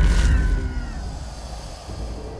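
Cinematic title-card sound effect: a heavy low rumble with a bright hit at the start, and a high tone sliding downward and fading out within about a second.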